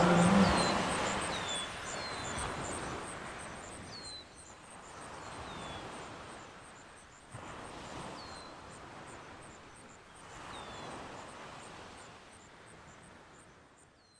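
Outdoor coastal ambience fading out: short, falling bird chirps repeat every second or two over a steady, rapid high insect pulsing. A soft rush of noise swells and ebbs every two to three seconds. Everything fades away near the end.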